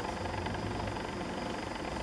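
Steady background hum and hiss with no distinct events, a faint thin high tone running through it.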